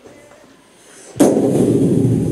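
A sudden loud thump a little past halfway, followed by a continuous rough, rushing noise, louder than the speech around it.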